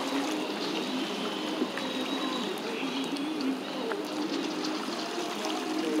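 Shallow sea water lapping and trickling against a rocky sea wall, a steady wash of water sound.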